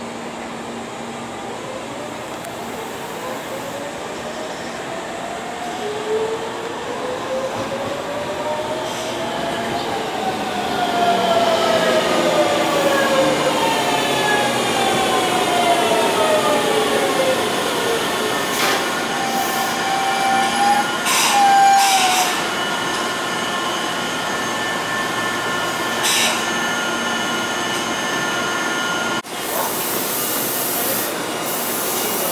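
Tobu 100 Series Spacia electric limited express arriving and braking to a stop: its traction motors whine in several pitches that glide and fall as it slows. A brief squeal and clicks come as it halts, then steady high tones from the stopped train, and a click as the doors open near the end.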